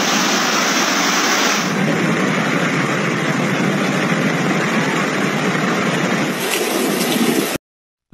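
Steady rushing noise of heavy rain and floodwater with a vehicle engine running under it. The sound changes at a cut about two seconds in and cuts off suddenly just before the end.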